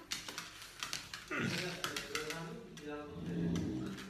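Rapid light clicks, typical of small dogs' claws tapping on a grooming table, mostly in the first second or so, followed by a low voice.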